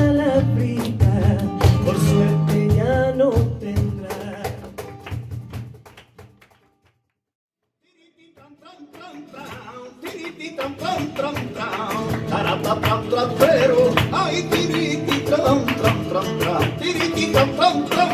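Live flamenco: singing over flamenco guitar, cajón and palmas (rhythmic hand-clapping). The music fades out to silence about six seconds in. A new passage fades back in around eight seconds, with dense clapping, guitar and singing.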